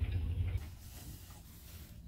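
Faint room tone with a low hum, fading over the first half-second and then holding steady.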